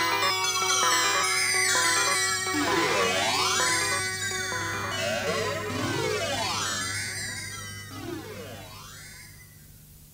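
Experimental electronic music from home-built analog synthesizer gear: a stepped run of held tones gives way to repeated sweeping glides, rising and falling in pitch, over a steady low hum. The music fades out toward the end.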